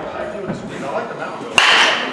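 A baseball bat hitting a pitched ball once, a sharp crack near the end, during batting practice in an indoor cage.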